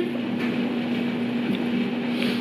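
A steady mechanical hum with one constant low tone under an even whirring noise, like a fan or household appliance running.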